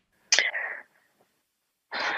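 Two short breathy, whisper-like sounds from a person's voice, without pitch, the first about a third of a second in and the second near the end, with silence between.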